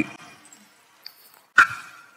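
A single short, sharp cry-like sound about a second and a half in, over faint room tone.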